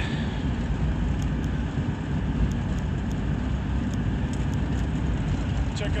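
Steady low rumble of a Ford Explorer driving along, engine and road noise heard from inside the cabin.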